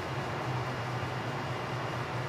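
Steady low hum with a faint hiss above it: mechanical room background noise.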